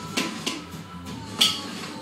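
A few sharp taps of drumsticks on upturned plastic bowls and containers, the loudest about one and a half seconds in, over background music.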